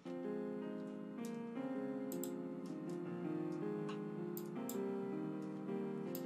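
FL Keys software piano playing back a MIDI chord progression: sustained chords changing about every second and a half, with a few faint clicks over them.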